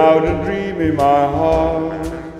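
Big band swing music with no lead vocal: the ensemble holds long notes, sliding up into pitch at the start, over a steady bass.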